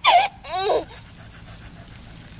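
A collie giving two short, high whining yips about half a second apart, the second sliding down in pitch.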